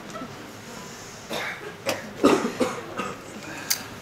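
A person coughing: a run of short, sudden coughs, the loudest a little past halfway.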